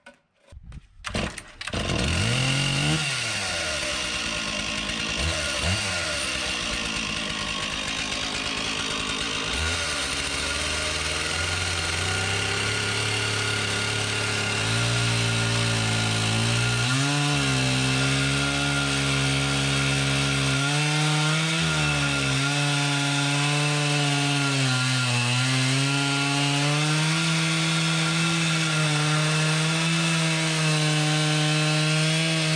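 Stihl chainsaw starting about a second in, revving up and down a few times, then running at high speed while cutting into a precast hollow-core concrete plank, its pitch dipping briefly now and then as the chain loads in the cut.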